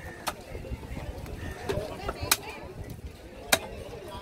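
Heavy cleaver chopping through a barracuda into a wooden log chopping block: three sharp chops spread over a few seconds, the loudest near the end.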